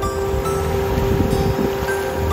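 Wind buffeting the microphone over open water, a steady rush, with soft background music holding long, steady notes underneath.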